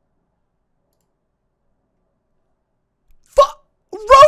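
Dead silence for about three seconds, then a short vocal sound about three and a half seconds in, with speech starting right at the end.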